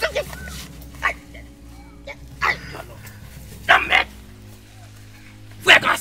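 Short dog-like barks, about five of them roughly a second apart, over faint background music.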